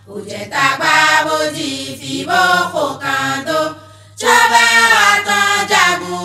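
A singing voice in a chant-like melody, sung in phrases, with a brief pause about four seconds in before a louder phrase begins.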